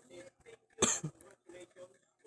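A person coughs once, sharply, about a second in, over faint, broken talk in the background.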